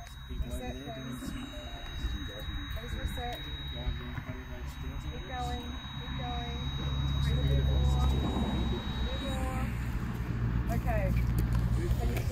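Indistinct voices of people talking quietly, under a steady high-pitched electronic tone that stops about nine seconds in. A low rumble grows louder from about six seconds on.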